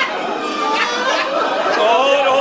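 Indistinct human voices, talking or murmuring over one another, that the speech recogniser did not pick up as words.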